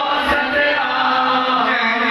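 A man's voice chanting a devotional hymn into a microphone, continuous and loud.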